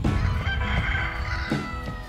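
A rooster crows once, a long call that falls away at the end, heard over background music.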